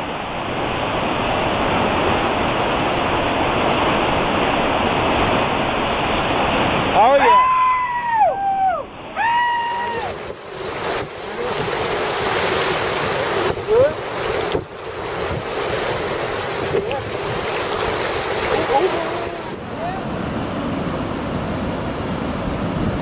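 Steady loud roar of whitewater in a big river rapid. A few excited whoops and shouts rise over it about seven to nine seconds in.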